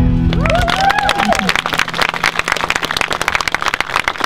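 A song for voice and acoustic guitar ends on a held chord, and a small audience at once breaks into steady applause. A few voices call out during the first second or so of the clapping.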